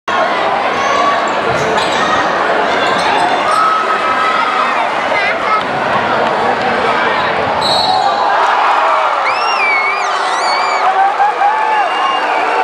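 Basketball game in a crowded gym: steady crowd noise with shouting voices, and sneakers squeaking on the hardwood court, several high squeaks coming in the last few seconds.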